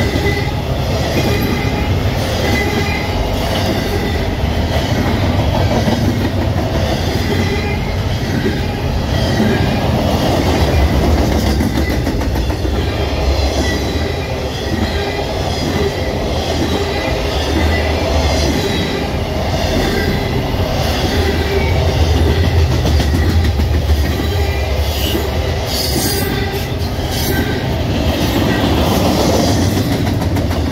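Norfolk Southern intermodal freight train's double-stack and trailer cars rolling past close by: a steady, loud rumble and clatter of steel wheels on the rails.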